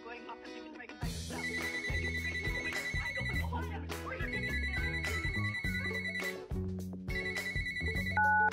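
Smartphone ringing for an incoming call: a high trilling ring in bursts of about two seconds, three times, over music with a low beat, starting about a second in.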